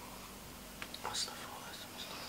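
Quiet whispering, with a few short sharp hissing sounds about a second in.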